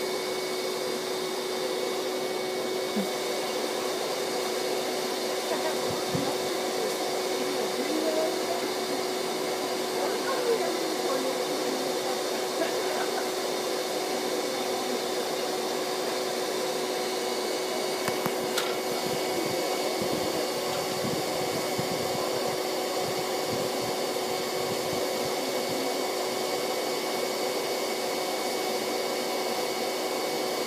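Vacuum motor running at a steady hum, sucking a honeybee swarm off a house eave through a long hose, with a few faint knocks over the top.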